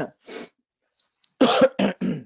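A man clearing his throat with two or three short, harsh coughs, starting about a second and a half in.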